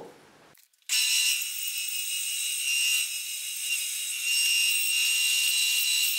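Bandsaw cutting a wooden guitar neck blank, roughing out the neck tenon: a steady high-pitched whine with cutting hiss that starts suddenly about a second in.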